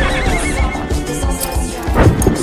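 A horse whinnying, one wavering high call in the first second, over background music with galloping hoofbeats.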